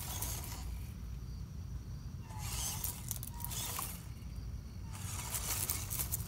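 WPL C24 RC crawler truck's small electric motor and gearbox whirring in three short bursts as the throttle is blipped, the truck inching over gravel.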